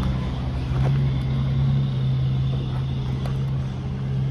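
A steady low motor hum with one held pitch, even throughout.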